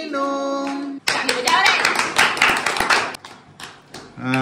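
Voices hold one last sung note for about a second, then a group of people clap their hands for about two seconds, the clapping thinning out near the end.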